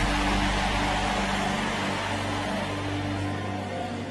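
Sustained low keyboard chord held under a loud rushing noise that slowly fades.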